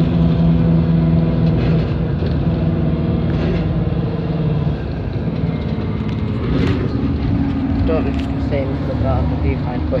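Bus engine and running gear heard from inside the cabin while the bus drives, a steady low rumble and hum. The engine note changes about halfway through.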